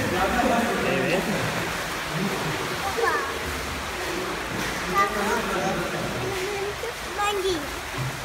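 Water splashing as legs kick in a swimming pool from the pool edge, with indistinct voices talking throughout.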